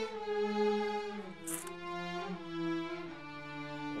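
Background score of bowed strings, violin and cello, holding long notes that step down to lower notes about a second in, with a brief hiss about a second and a half in.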